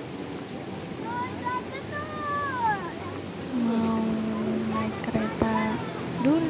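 Steady rush of river water pouring over a low weir, with voices of passers-by over it. A louder, steady held tone with overtones sounds in the second half.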